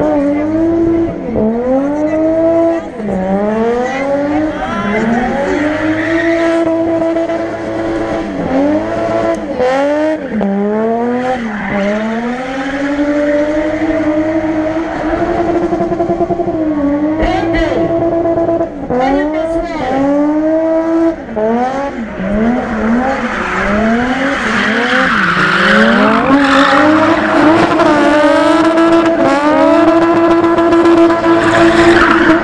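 BMW E30's M20 straight-six revving hard over and over, its pitch climbing and dropping, with long steady holds at high revs, as the rear tyres spin and squeal on the paving.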